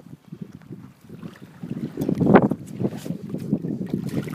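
Wind buffeting the phone's microphone over water lapping and sloshing beside the kayak, with a louder gust about two and a half seconds in.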